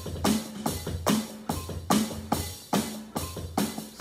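Loud, steady drum groove played with sticks at about 144 beats per minute, a hit on every beat with a short low ring after each.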